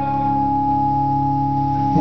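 Live rock concert music: a sustained chord held steady between two sung lines, with no singing over it.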